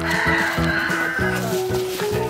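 A rooster crowing once, for about a second, over background music.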